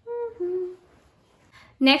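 A woman hums two short notes in the first second, the second lower than the first.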